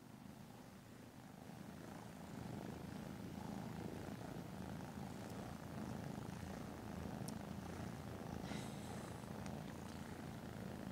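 Cats purring softly and steadily, close to the microphone, while a litter of kittens nurses from their mother. The purring grows louder about two seconds in, and a few faint clicks come near the end.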